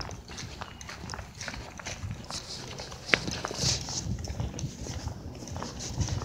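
Footsteps on asphalt pavement, with the rustle and bumps of a handheld phone being carried while walking. There is a sharp click about three seconds in.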